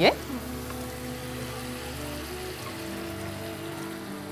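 Water poured from a jug into a hot kadai of frying tomatoes, a steady splashing pour.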